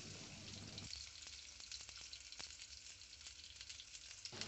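Tomato wedges frying faintly in a little oil in a steel kadai, a soft sizzle with many small crackles, a little quieter from about a second in.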